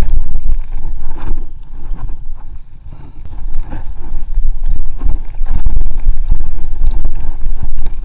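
Wind buffeting hard on the microphone over the rattle and knocks of an aluminium hardtail mountain bike, a 1994 GT Zaskar LE, bumping fast down a dirt trail. The wind noise eases for a moment a couple of seconds in.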